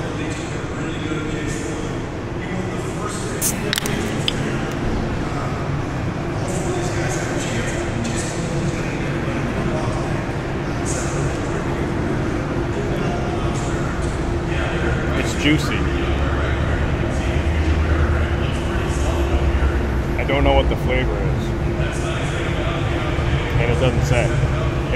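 Steady city-street background noise: a low hum and traffic rumble that swells in the second half, with faint voices and a few sharp clicks about three to four seconds in.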